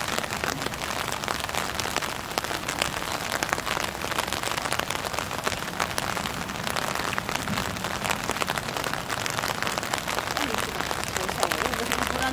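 Steady rain falling, with a dense patter of individual drop hits.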